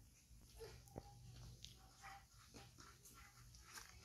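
Near silence, with faint small sounds from a baby macaque drinking from a milk bottle and a soft click about a second in.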